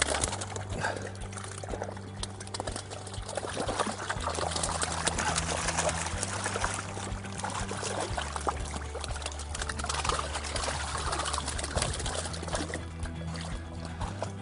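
Water splashing and trickling over background music with steady low chords.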